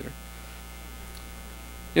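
Steady electrical mains hum, a low, even drone with faint higher overtones, heard in a pause between spoken words.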